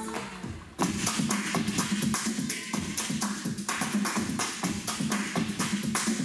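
Electronic dance music for a street dance routine, played loud. The track thins and drops away for a moment in the first second, then cuts sharply back in with a dense, fast beat.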